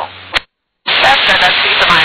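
Aviation VHF radio: one transmission cuts off with a click and a moment of dead silence. A weak, static-laden transmission then opens about a second in, with loud steady hiss over a faint voice.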